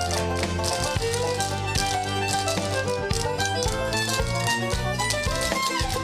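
A clogging team dancing to upbeat recorded music, the rapid clicks of their tap shoes running over the music's steady bass and sustained notes.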